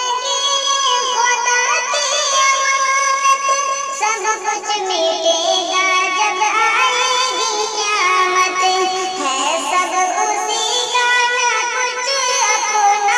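A solo voice singing an Urdu poem in a sustained, ornamented melody, unbroken from start to end.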